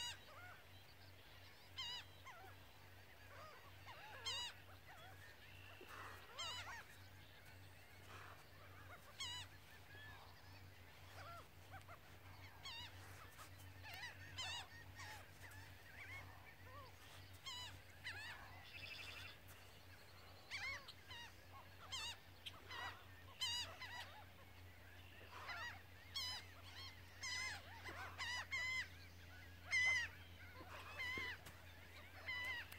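Faint bird calls: many short, wavering calls scattered throughout, with a brief buzzy trill about two-thirds of the way through.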